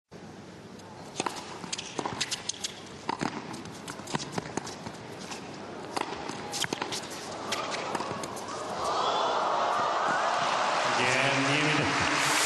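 Tennis rally in an indoor arena: sharp racket strikes and ball bounces every half-second to a second. From about seven seconds in, a crowd rises into loud, steady cheering and applause as the point is won.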